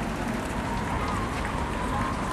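Footsteps of many marathon runners passing on the road, a steady mass of noise with faint ticks of individual strides.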